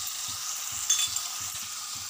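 Chopped onions and tomatoes frying in oil in a stainless-steel kadai, a steady sizzle, with one short metallic clink about a second in.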